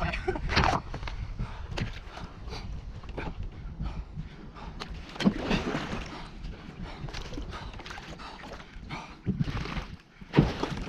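Water splashing and sloshing against a kayak hull as a sheep swims and struggles right alongside, with one sharp knock about five seconds in.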